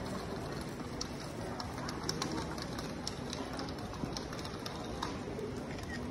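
Open-air ambience of a city square: a steady low background noise with many faint, short, high bird chirps scattered through it.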